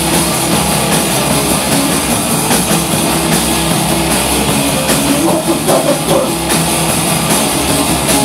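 A live rock band playing loud: electric guitars and a drum kit, with cymbals ringing steadily over the top.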